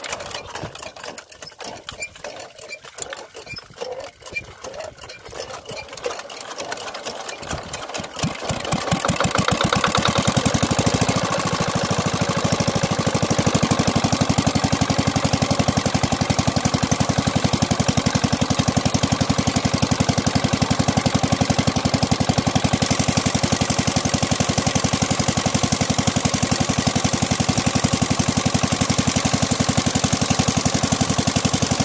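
Small diesel water-pump engine turning over unevenly at first, then catching about eight seconds in and settling into a loud, steady running beat. From then on, water from the pump gushes out of the outlet pipe along with the engine.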